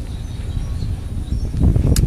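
Wind rumbling on the microphone outdoors, growing stronger in the last half second, with a brief click at the very end.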